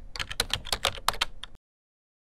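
Computer keyboard typing: a quick run of key clicks, about seven a second, that stops about one and a half seconds in.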